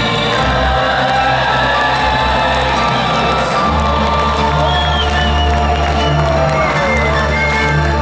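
Symphonic metal band's music playing live with sustained held chords, while a concert crowd cheers and whoops; a deep bass note comes in about halfway through.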